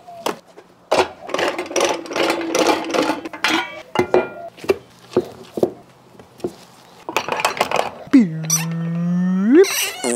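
Wet slaps and irregular knocks and clinks as sticky meat paste is handled and packed into the stainless steel canister of a sausage stuffer. Near the end a man's voice holds a low hummed note for about a second and a half, rising at the finish.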